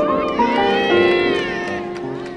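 Music with held chords and a high gliding line that rises and then falls through the middle.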